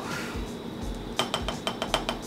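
A spoon clinking against a ceramic bowl: a quick run of light clinks starting a little over halfway through.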